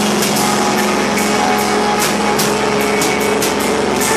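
Live screamo band playing loud: distorted electric guitars hold sustained chords while drums and cymbals strike, with a run of quick hits about three seconds in.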